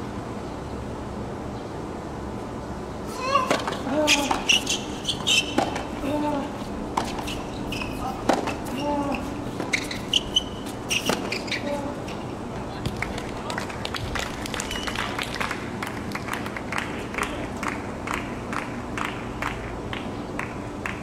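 Tennis rally on a hard court: rackets striking the ball and the ball bouncing, sharp pops at irregular intervals, mixed with short voice sounds. Later on, a run of lighter, evenly spaced ticks.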